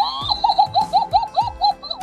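Hanging Halloween witch decoration playing its sound effect: a high voice laughing in a quick run of about eight short rising-and-falling syllables, a cackle.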